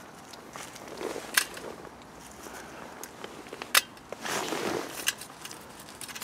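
Scattered light clicks and a brief rustle, a little after four seconds in, from pine cones and thin birch twigs being handled in a small stainless steel wood-burning camp stove.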